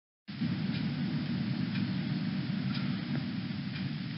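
Steady background noise of the recording, a low rumble with hiss and a few faint ticks, after a brief total dropout at the very start.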